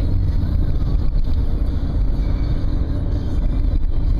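Steady low rumble of a car driving at moderate speed, engine and road noise heard from inside the cabin.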